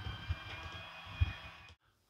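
Small electric motor of the Eternia playset's toy monorail whining faintly and steadily as it drives the shuttle around the plastic track, with a few soft bumps. The sound cuts off suddenly near the end.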